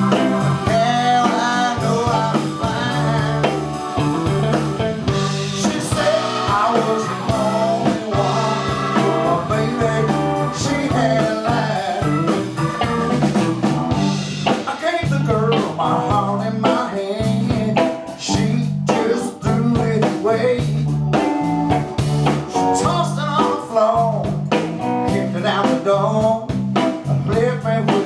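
Live blues band playing: electric guitar over bass guitar, drum kit and keyboard, with a steady beat.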